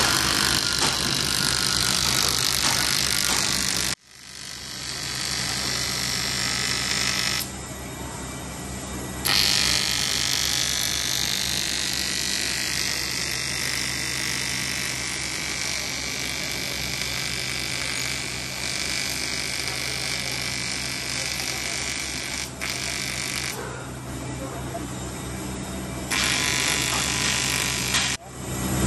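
TIG welding arc on a cracked aluminium alloy wheel rim: a steady electrical buzz with hiss. The sound cuts out abruptly about four seconds in and builds back up, and it goes quieter and louder again a few times as the arc is worked.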